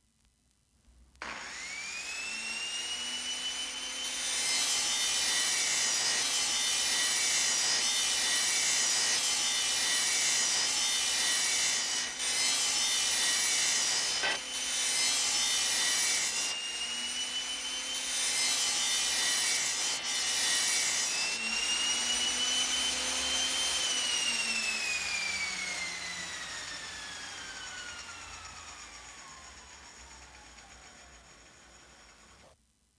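Electric power saw. The motor spins up with a rising whine, then cuts through wood twice, with a coarse rasping noise over the steady whine. After a brief rev up it winds down with a long falling whine as the sound fades.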